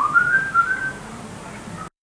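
A person whistling a short phrase: a quick upward glide into a few brief held notes, stopping about a second in. Just before the end the sound cuts out completely.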